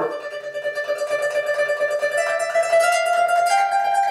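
Harp string played as a fingernail tremolo, the nail flicking rapidly back and forth across the string to sustain one note, which steps up to a higher note near the end.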